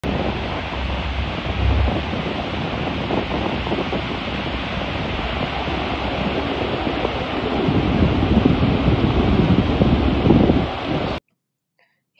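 Steady roar of Niagara's American Falls and the churning water below, with wind gusting on the microphone. The sound cuts off abruptly about eleven seconds in.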